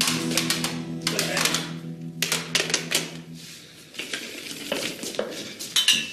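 A spoon clattering quickly and unevenly against a mixing bowl as batter is stirred. Under it a steady low hum runs and stops about three and a half seconds in.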